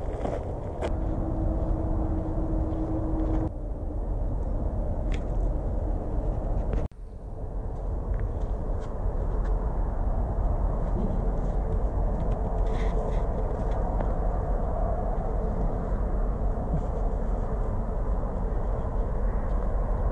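Steady low outdoor rumble with a faint droning hum, broken by a few scattered clicks; it dips briefly about seven seconds in.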